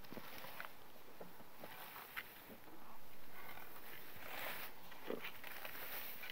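Rake dragging through freshly mown grass: rustling, scraping strokes with a few light clicks, one longer swish about four seconds in.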